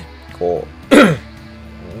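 A man clears his throat with a single sharp cough about a second in, after a brief voiced sound just before it.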